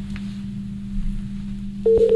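Steady low hum on an open telephone line. Near the end a single steady pure tone comes in, like a call-progress tone on the line while a call is being placed.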